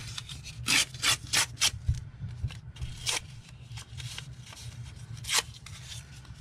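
Paper being handled and rubbed against paper and the tabletop: a quick run of four short scraping strokes about a second in, then two more single strokes later.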